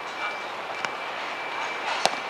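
A futsal ball being kicked on an artificial turf pitch: a sharp kick about a second in and a louder one near the end, over a steady outdoor background hum.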